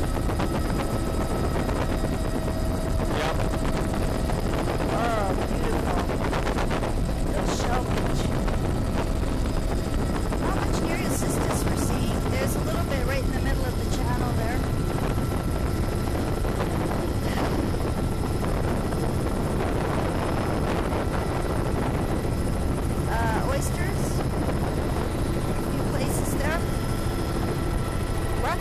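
Steady helicopter cabin noise: the rotor and engine drone running evenly throughout, heard from inside the aircraft during low-level flight.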